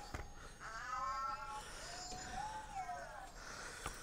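Boxer toy robots making their electronic voice sounds: a warbling chirp about a second in, then a longer tone that rises and falls about two seconds in.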